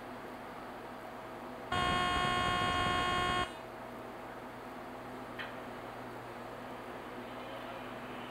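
An electronic buzzer sounds once, a steady pitched tone lasting under two seconds, over a faint steady equipment hum.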